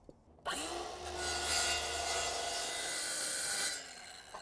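Circular saw starting up about half a second in, its motor whine rising, then cutting through a treated pine board, with the sound dropping away near the end as the cut finishes.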